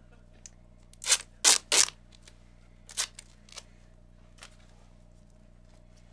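Duct tape being pulled off the roll and torn in short rips: three quick rips about a second in, another near the three-second mark, then a couple of fainter ones.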